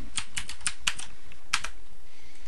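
Computer keyboard typing: a quick run of about seven keystrokes, a short pause, then two more keystrokes about a second and a half in.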